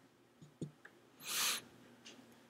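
Dry-erase marker writing on a whiteboard: a light tap of the tip about half a second in, then one short, hissy stroke in the middle.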